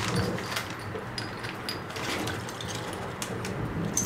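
Small metal suppressor parts clicking against each other and a plastic zip-lock bag crinkling as the parts are handled, over a steady low hum.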